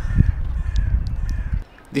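Gusty low rumble of wind on the microphone at the seashore, with a bird calling faintly over it in the first second; the rumble cuts off suddenly near the end.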